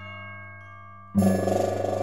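Background music, and about a second in a sudden loud, fast drumming rattle at the kitchen vent, the mystery noise from the attic that sounds like wings beating against the vent.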